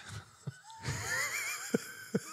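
Men laughing: a high-pitched, wheezy laugh whose pitch wobbles up and down, swelling about half a second in and breaking into short gasping bursts near the end.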